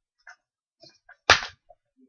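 Small boxes of strip eyelashes being gathered up by hand: a few faint ticks and rustles, then one sharp knock about a second and a quarter in.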